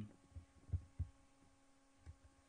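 Three faint low thumps in the first second, over a steady electrical hum.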